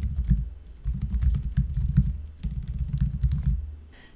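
Typing on a computer keyboard: quick keystrokes in three short runs with brief pauses between them.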